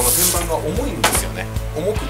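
A fabric T-top storage bag rustling as it is unfolded and handled, with a brief swish at the start and another about a second in, over background music with a steady beat.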